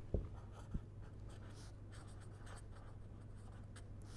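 Pen writing on paper: faint scratching strokes, with two soft knocks in the first second, over a steady low hum.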